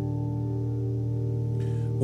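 Recorded solo jazz piano music holding one steady, sustained chord at the close of a medley.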